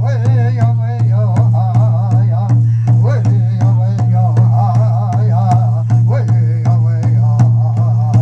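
Native American powwow-style drum beating a steady, even rhythm with voices singing a wavering chant over it, accompanying a dancer.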